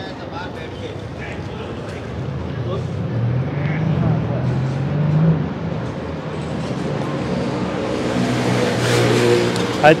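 Motor traffic passing on a city street. A vehicle's engine hum swells about three to five seconds in. Another vehicle approaches and passes close near the end, its tyre noise growing louder, over the murmur of passers-by.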